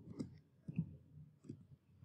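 Computer keyboard keys being typed: about six faint, separate keystrokes at an uneven pace.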